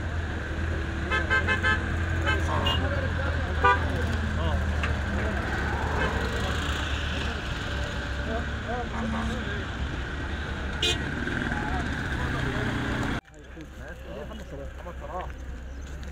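Outdoor street noise: a steady low engine rumble from vehicles, with short horn toots early on and voices in the background. It cuts off abruptly about 13 seconds in to quieter background chatter.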